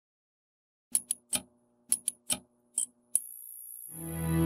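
Sound effect of a neon tube flickering on: about eight sharp electric clicks in uneven bunches, then a steady faint buzz from about three seconds in.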